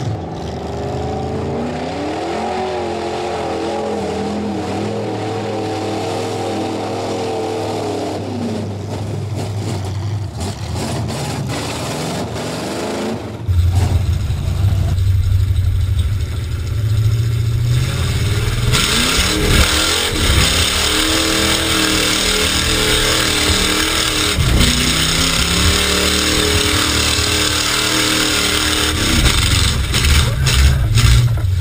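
Mud truck engine revving up and down as the truck churns through a mud pit. About halfway through, the sound becomes the engine heard from inside the gutted cab, louder and closer, with repeated rising and falling revs and a steady hiss joining.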